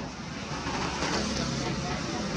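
Indistinct voices over a steady, noisy background rumble, growing a little louder about half a second in.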